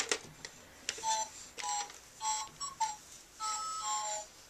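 A baby's electronic activity cube toy plays a simple tune of short beeping notes, starting about a second in, after a click or two as a button on it is pressed.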